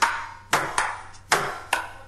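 Sharp percussive hits from a club sound system, five in about two seconds at uneven spacing, each followed by a long echoing tail.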